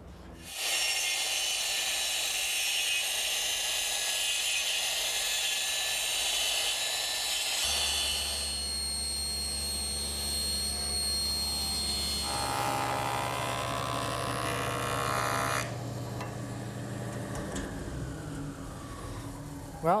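Table saw running and cutting a tapered pine stile, a steady loud saw noise whose pitch shifts partway through the cut. About 16 seconds in the noise drops sharply and a faint falling tone follows as the blade winds down.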